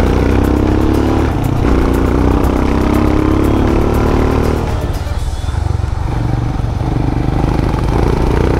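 Motorcycle engine pulling hard through the gears, its pitch climbing in steps with gear changes about a second in and about four and a half seconds in. It eases off for a couple of seconds, then pulls again near the end, over steady wind and road rumble.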